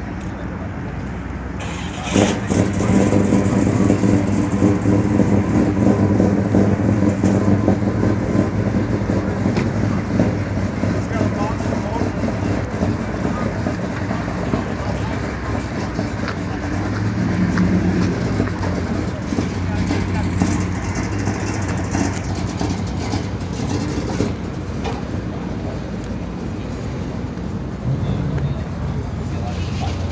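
A car engine idling steadily, louder from about two seconds in, with the murmur of a crowd around it.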